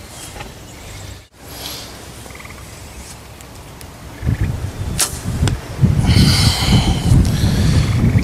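A Mathews Z7 compound bow shot with a finger release: a sharp snap about five seconds in and a second click half a second later. Several seconds of loud, low rumble follow.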